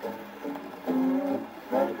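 A 1937 Decca 78 rpm shellac record of a Hawaiian string band playing on an acoustic Victrola phonograph: an instrumental passage of plucked strings. The singing comes back in just before the end.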